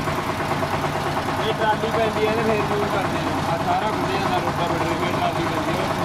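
Small engine of a mini tractor idling steadily.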